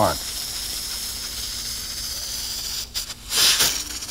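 Pressure cooker at its 15 psi maximum, steam escaping past the weight regulator in a steady hiss as the excess pressure vents. About three seconds in comes a louder, brief rush of steam.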